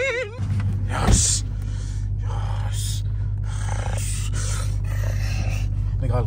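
Dodge Hellcat's supercharged V8 idling with a steady low drone heard inside the cabin, with a short thump about a second in.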